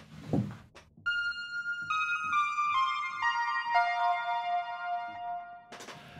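ARP Odyssey analog synthesizer playing a line of about six single notes stepping down in pitch, each ringing on into the next through analog delay, reverb and chorus effects; the last, lowest note is held for about two seconds and then stops.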